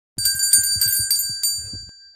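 Small handbell rung quickly, about five strokes in a second and a half, with a bright high ringing that then fades away.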